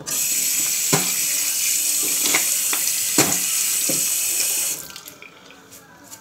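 Bathroom sink tap turned on and running steadily, then shut off just before five seconds in, while teeth are rinsed after brushing. A few short sharp sounds stand out over the running water.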